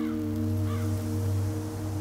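A sustained electronic chord of soundtrack music comes in suddenly, with a deep steady bass note under several held higher tones, then moves to a new chord right at the end.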